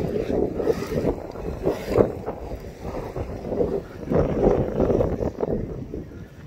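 Wind buffeting a hand-held phone's microphone: an uneven rumble that swells and fades.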